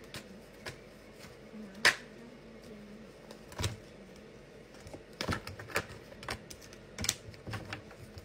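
Tarot cards being shuffled and tapped down on a glass tabletop: scattered, irregular sharp clicks and taps, the loudest about two seconds in, coming more often in the second half.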